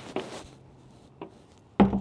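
Large fibreglass deck hatch being lowered on its gas struts and shutting onto the deck with a single thud near the end, after a light click about a second in.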